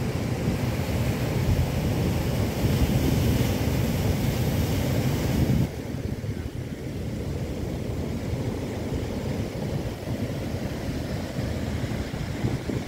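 Heavy storm surf from a cyclone-driven sea breaking and washing over foam, with strong wind buffeting the microphone. It is louder with more hiss until about halfway through, then drops suddenly to a lower, steadier rush.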